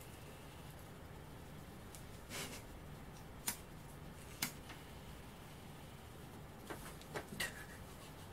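A lighter being clicked to light small tealight candles: a handful of faint, sharp clicks at irregular intervals over quiet room tone.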